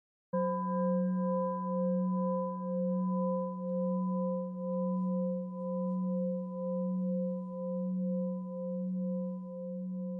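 A singing bowl struck once, about a third of a second in. It rings on with a low hum and several higher overtones, its loudness wavering about once a second as it slowly fades.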